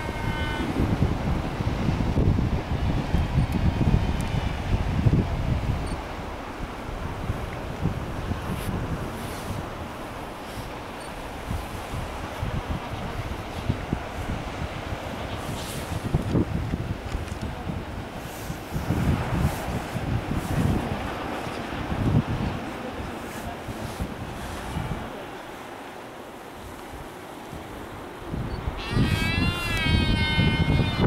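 Wind buffeting the microphone, heaviest in the first six seconds, over the steady wash of surf below the cliffs. Calls from the albatross and penguin colony come through now and then, with a loud bleating call near the end.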